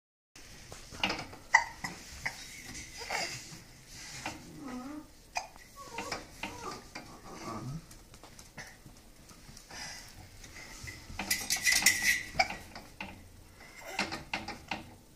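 Metal baby gate clinking and rattling as a baby grips and shakes its bars, with the baby's babbling between the clinks. A dense run of rattling comes near the end.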